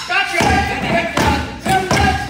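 Kitchen-gear percussion: pots, pans and utensils struck in rhythm, with deep thuds about twice a second, sharp taps and ringing metallic tones, mixed with a voice-like backing track.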